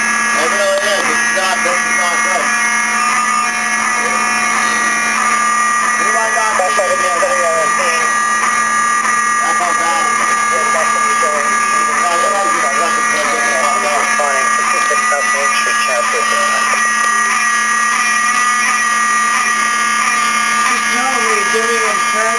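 Apartment building fire alarm sounding without a break, a steady tone at constant level, set off by smoke from cooking left on the stove. People talk over it.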